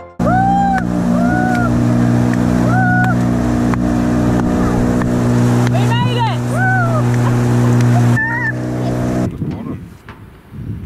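Outboard motor on an inflatable dinghy running steadily at speed, with people whooping excitedly over it several times. The motor sound cuts off near the end.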